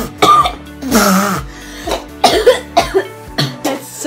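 A young man coughing and gagging several times in quick succession, a reaction to a mouthful of chicken broth he finds disgusting, over background music.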